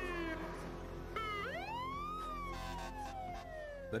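Fire engine siren wailing: a falling tone at the start, then a little over a second in it winds up, peaks and falls slowly away.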